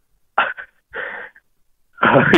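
A person's two short breathy exhales over a telephone line, a scoffing half-laugh in reaction to being lectured.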